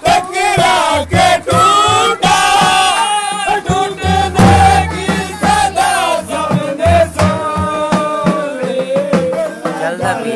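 Live dhol drumming with a loud, wavering sung melody over it, accompanying a jhumar dance.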